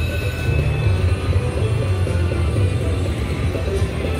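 Slot machine free-games bonus music playing as the reels spin, over a steady deep hum of casino background noise.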